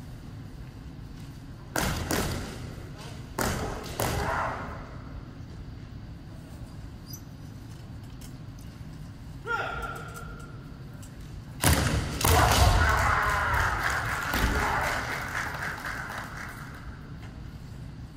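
Kendo bout in a large gym: sharp thumps of stamping feet on the wooden floor and bamboo shinai strikes, with the fighters' kiai shouts echoing in the hall. A short falling cry comes about halfway through, then a long loud stretch of shouting and striking begins a few seconds later.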